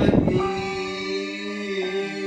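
A harmonica sounding one long held chord, after a short thump at the start; the chord shifts slightly near the end.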